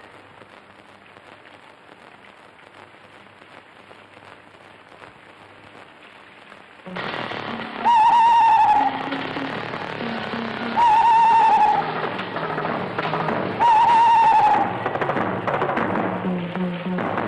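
Film soundtrack: a steady hiss of rain, joined about seven seconds in by a louder layer of low sustained notes. Over it come three loud, wavering, slightly falling high tones about three seconds apart.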